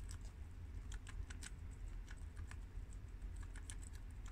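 Guinea pigs munching romaine lettuce: a run of quick, irregular crisp crunches.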